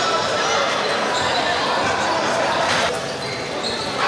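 Table tennis ball knocking back and forth off paddles and table in a rally, over the steady chatter of a crowded, echoing sports hall.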